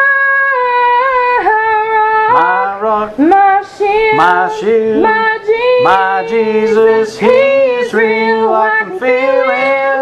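A woman singing a gospel song with vibrato, a lower voice joining her in harmony about two and a half seconds in.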